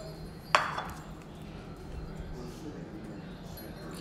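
A single sharp clink of a metal fork against a ceramic dinner plate about half a second in, with a short ringing tail.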